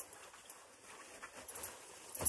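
Faint rustling of a fabric scarf being wrapped around the neck and settled over a jacket, with a few soft handling sounds, a little clearer near the end.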